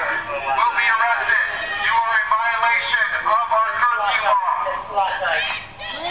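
Indistinct voices talking and calling out with no clear words, thin and tinny in sound.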